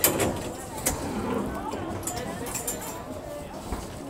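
Faint, indistinct voices of people nearby, with a light knock at the start and another about a second in.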